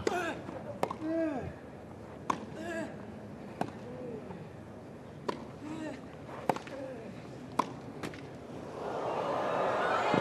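Tennis rally on a grass court: sharp racket-on-ball strikes every one to one and a half seconds, several followed by a player's short grunt. Near the end the crowd noise swells as the point is lost on a missed shot, giving up a break of serve.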